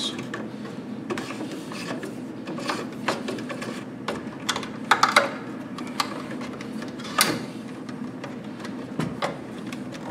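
Electrical cable being pulled and fed by hand through plastic electrical boxes: scattered rustles, scrapes and light knocks of the cable against the plastic boxes and wood, over a steady low hum.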